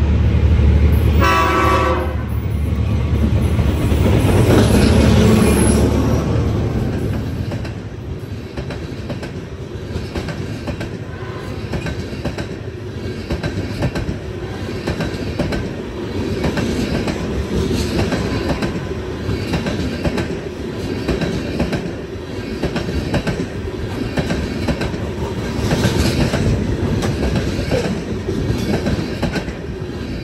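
A diesel freight train sounds a short horn blast about a second in, and its locomotives rumble heavily past over the first several seconds. A long string of freight cars follows with a steady clickety-clack of wheels over the rail joints.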